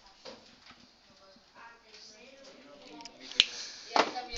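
Faint scraping and squeaks of a marker on a whiteboard as letters are rubbed out and rewritten, then one sharp click about three and a half seconds in.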